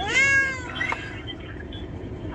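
Grey cat meowing: one long meow at the start that rises in pitch and then levels off, followed by a short faint one about a second in.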